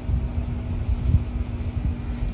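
Wind buffeting the microphone: an uneven low rumble, with a faint steady hum underneath.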